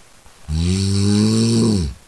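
A person snoring: one loud snore starting about half a second in and lasting over a second, its pitch dropping as it ends.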